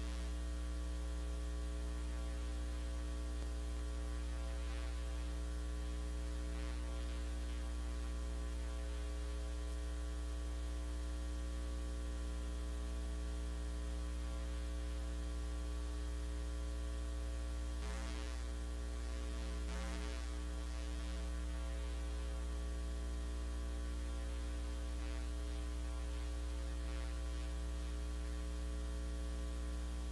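Steady electrical mains hum on the chamber's sound feed, low and buzzy with many overtones, and a couple of faint brief sounds about two-thirds of the way in.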